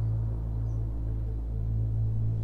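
Background score: a low, sustained drone that holds steady with gentle swells.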